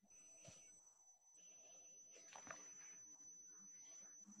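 Near silence: faint room tone with a thin steady high hiss, broken by two faint clicks, about half a second in and about two and a half seconds in.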